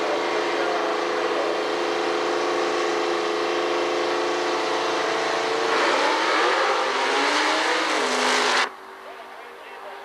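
Drag car's engine held at high, steady revs on the starting line, then launching about six seconds in with a louder surge that falls in pitch as the car pulls away. The sound cuts off sharply near the end, leaving it much quieter.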